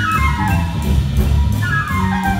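Live jazz quartet playing: a saxophone runs quickly down through a string of notes, then starts a new phrase high up near the end, over walking double bass and drums with cymbals.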